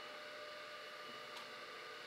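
Faint steady room tone: a low hiss with a thin steady hum, and one very faint tick about two-thirds of the way through.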